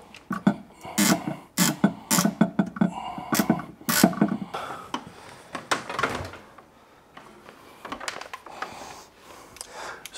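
A run of sharp plastic clicks from a plastic hose clamp and fitting being worked on the return pump's hose, over the first four or five seconds. Fainter handling noises follow.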